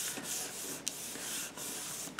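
Palms rubbing paper flat on a tabletop, a steady papery swishing in a few long strokes: freshly glued wallpaper being smoothed down onto a paper envelope.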